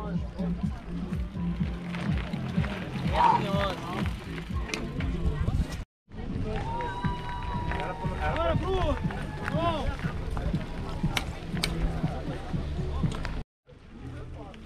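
Indistinct voices and shouts over a steady low rumble, with one long drawn-out call in the middle. The sound drops out completely for a moment twice, at about six seconds and just before the end.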